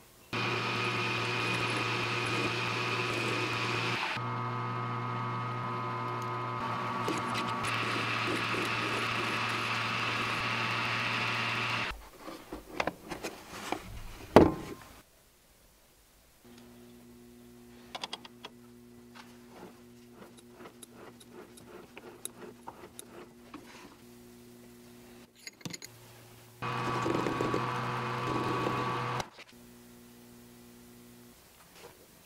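Bench metal lathe running steadily with a constant motor and gear hum while turning a rod held in its chuck; it stops about twelve seconds in, followed by a few clicks and one sharp knock. After a short silence a fainter steady machine hum runs, and the lathe runs loudly again for a couple of seconds near the end.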